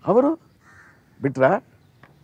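A man's voice: two short, emphatic utterances about a second apart, the first rising sharply in pitch.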